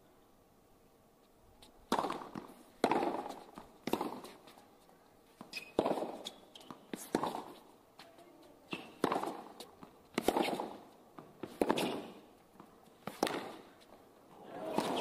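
Tennis rally on a hard court: sharp pops of racket strikes on the ball and ball bounces, about one a second, starting about two seconds in.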